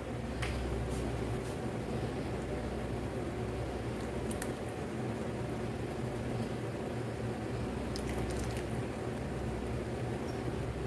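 Creamy carbonara sauce simmering in a metal frying pan as it is stirred slowly with a spatula while an egg-yolk and milk mixture is poured in, a steady squishing, liquid sound over a low hum. A few faint clicks of the utensil against the pan.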